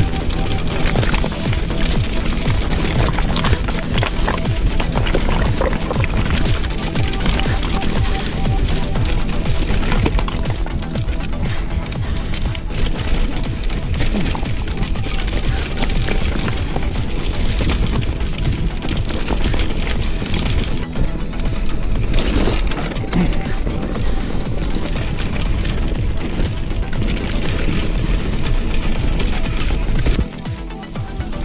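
Background music laid over the riding, with the irregular clatter and rattle of a mountain bike's tyres and frame over loose rocks beneath it.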